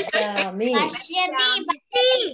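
Speech only: voices reciting words in a drawn-out, sing-song way, heard over a video call.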